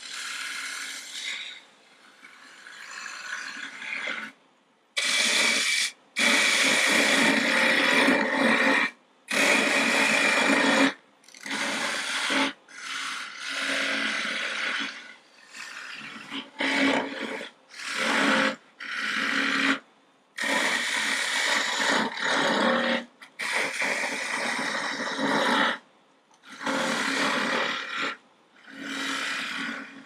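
Lathe tool cutting green, spalted aspen as it spins on a wood lathe, in about fifteen separate passes of half a second to three seconds each, with short quiet gaps as the tool is lifted between cuts. The loudest passes come a few seconds in.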